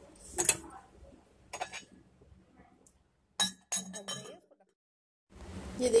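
Glass clinking on glass: a glass cover knocking against a cut-glass bowl a few times, each a short ringing clink, with quiet gaps between.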